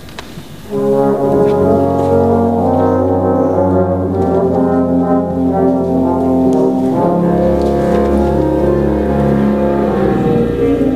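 Wind ensemble playing full, sustained chords with the brass prominent, coming in loudly under a second in after a brief quieter moment. The held chords change every couple of seconds.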